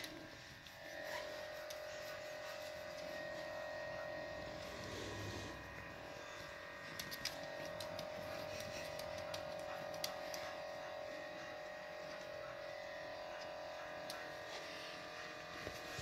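A steady hum, with a few faint clicks about seven, ten and sixteen seconds in.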